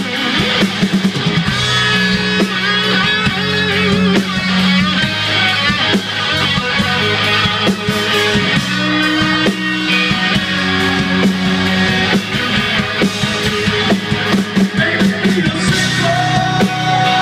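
Live rock band playing an instrumental passage with electric guitars and a drum kit, without vocals.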